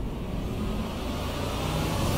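Low, steady rumble of a dramatic background-score drone, with a swelling whoosh of noise building near the end.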